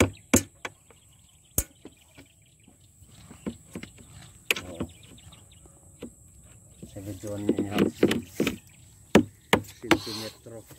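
Scattered sharp clicks and knocks, a few seconds apart, with brief low voices near the end.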